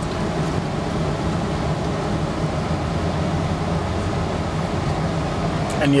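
Steady low hum and rumble inside a car's cabin, the car stopped with its engine idling.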